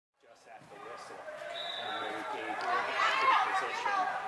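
Indistinct voices of lacrosse players calling out during practice on an indoor turf field, fading in over the first second or so and growing louder near the end. A brief high steady tone sounds about a second and a half in.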